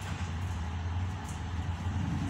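A steady low machine hum, like an engine or motor running, with no speech.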